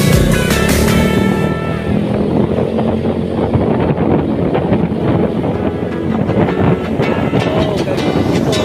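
Motorcycle ride noise, a rough engine and wind rumble, mixed with background music. The music's beat and melody are plain at the start, give way to a muffled rumble through the middle, and come back near the end.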